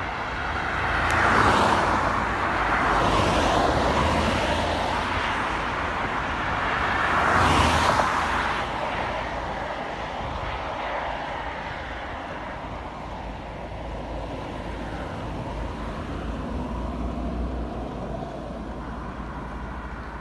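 Road traffic on a dual-carriageway ring road: steady tyre and engine noise, with vehicles swelling past close by about a second in and again near eight seconds in.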